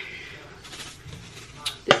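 Butter sizzling faintly in a frying pan, with a couple of sharp clicks near the end as a seasoning can is handled.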